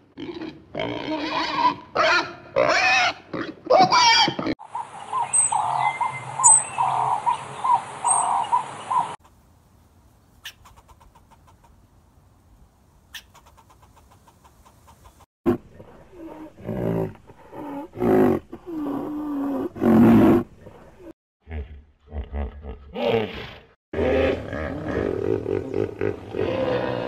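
Pigs grunting and squealing, followed by other animal calls, with a quiet stretch in the middle.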